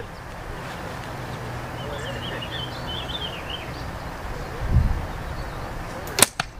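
Outdoor ambience of wind on the microphone, a steady rush with a low gust buffeting near the end, and a small bird chirping faintly in the middle.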